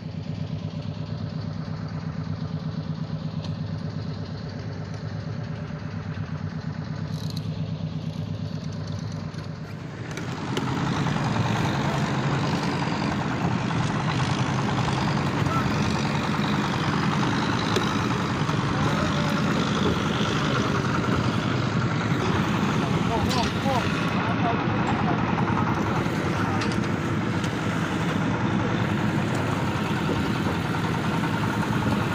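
Fishing boat engine running steadily at an even pitch. About ten seconds in the sound grows louder and busier, with added noise over the engine.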